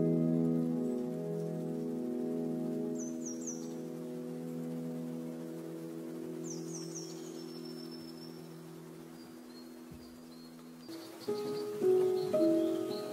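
Soft ambient background music: a held chord slowly fades, and new notes are struck near the end. Short bird chirps of about three quick falling notes sound a few seconds apart.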